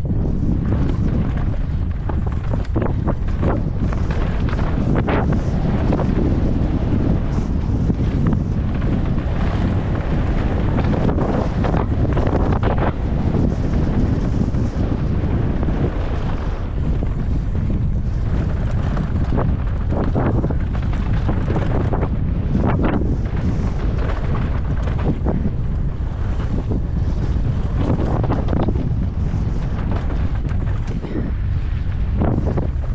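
Wind buffeting a camera microphone on a fast downhill mountain-bike run, a steady loud rumble. Short knocks and rattles from the bike over rough dirt come through it every few seconds.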